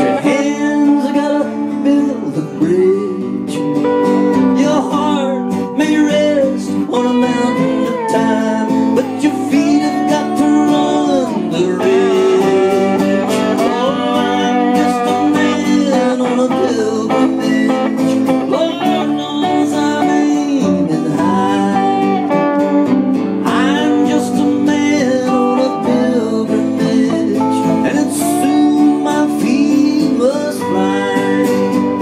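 Live acoustic country-folk music: an acoustic guitar strummed steadily under a mandolin picking a lead line, in an instrumental break with no singing.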